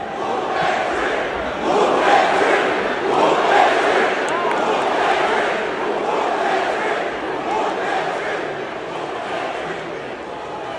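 Large arena crowd cheering and shouting, swelling about a second in and easing off toward the end.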